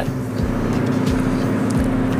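Steady road and engine noise of a moving car, heard inside its cabin, a low even drone.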